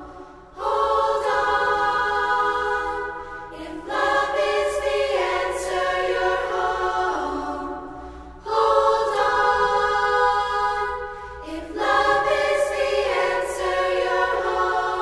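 A choir singing long held chords in phrases of about four seconds. Each phrase starts strong and fades before the next one comes in, over a low steady drone.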